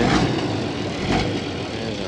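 A farm tractor's diesel engine running at low speed with an uneven, rough sound, described as not sounding good.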